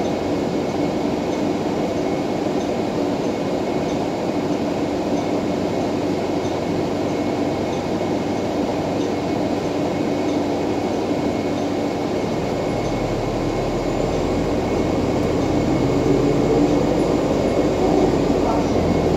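Inside a 2014 NovaBus LFS hybrid-electric city bus under way: its Cummins ISL9 diesel and Allison EP40 hybrid drive give a steady hum and cabin rattle with a faint high whine. About two-thirds of the way through, a deeper low note comes in and the sound grows louder as the bus pulls harder.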